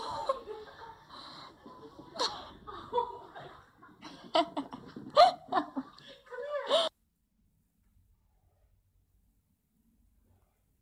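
A person laughing and giggling in short peals, cutting off abruptly about seven seconds in, with silence after.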